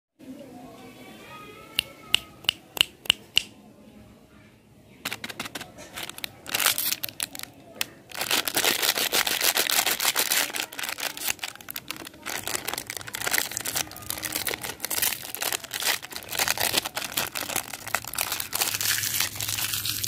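Thin plastic candy wrapper crinkling and crackling close to the microphone as a cream caramel lollipop is unwrapped by hand, in scattered bursts at first and then dense and continuous from about eight seconds in. Near the start there is a quick run of about six sharp clicks.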